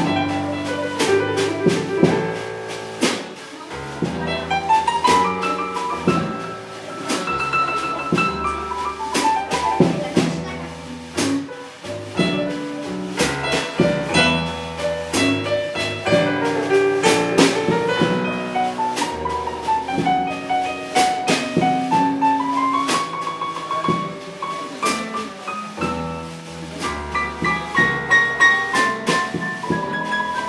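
Live blues trio playing an instrumental break on keyboard, electric guitar and drum kit, with a lead line sweeping up and down over a steady drum beat.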